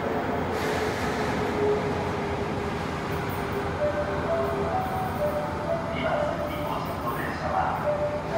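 Osaka Metro 80 series subway train approaching the platform through the tunnel, a steady rumble, with a platform announcement heard over it.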